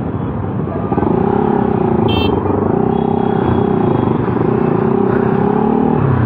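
Motorcycle engine running at a steady, slightly wavering pitch that strengthens about a second in, over a low rumble of road traffic. A brief high-pitched beep sounds about two seconds in.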